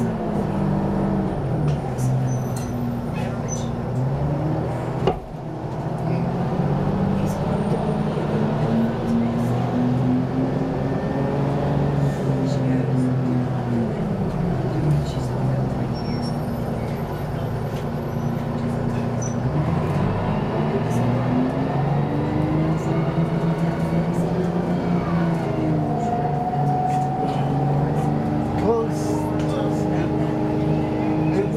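Detroit Diesel 6V92 two-stroke V6 diesel of a 1991 Orion I transit bus, heard from inside the cabin while driving. Its pitch climbs over several seconds and falls back twice, as the Allison automatic transmission shifts up under acceleration. A single sharp knock comes about five seconds in.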